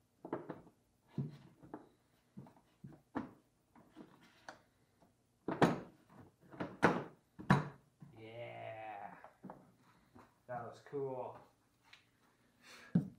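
Hollow plastic knocks and clicks as the hood and nose shell of a Power Wheels toy Corvette is pressed and fitted onto the body, with three sharp knocks a little past the middle. A voice sounds briefly twice near the end.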